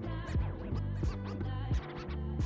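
Background music with a steady beat and low bass notes.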